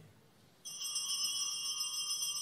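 Altar bells (sanctus bells) shaken in a continuous bright jingling ring, starting just over half a second in; the ringing marks the elevation of the chalice at the consecration.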